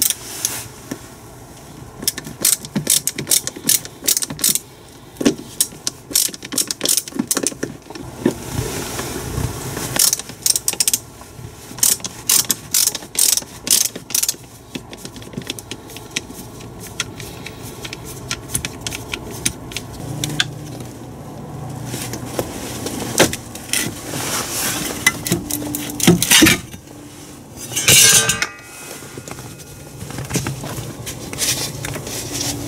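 A ratcheting screwdriver clicking in quick, irregular runs as it backs screws out of the plastic trim under the dash. Near the end the clicking gives way to a few knocks and a rustle as the trim panel is handled.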